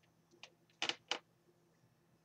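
Faint short clicks and taps from handling a mini hot glue gun over lace trim: one light tap about half a second in, then two sharper clicks close together just before the one-second mark.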